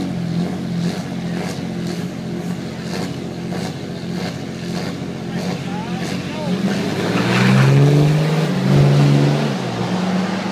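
Pickup truck engines idling at a drag strip start line, then revving hard as the trucks launch and accelerate down the track, loudest about seven to nine seconds in.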